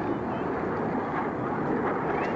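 Military jet aircraft flying by at a distance: a steady, rushing engine rumble.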